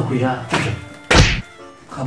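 A single heavy thud about a second in, short and the loudest thing here, following a man's brief speech, with music underneath.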